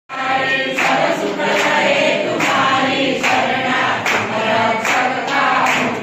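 A temple congregation singing a devotional song together, with a steady beat of sharp claps a little more than once a second.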